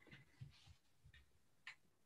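Near silence, with about five faint, short clicks scattered irregularly through it.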